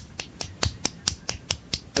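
A rapid, even series of sharp clicks, about five a second.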